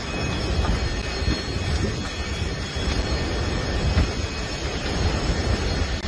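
Steady rushing roar of wind and fire, with low rumbling gusts buffeting the microphone.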